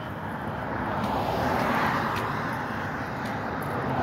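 Road traffic passing close by: tyre and engine noise of a vehicle swelling to a peak about two seconds in and easing off, then another vehicle approaching near the end.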